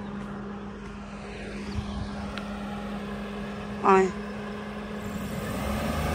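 Suzuki Wagon R car engine running with a steady hum as the car works along a sandy, rutted track, growing a little louder near the end as it comes on.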